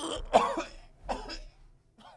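A man coughing harshly in two short fits about a second apart, the first the louder.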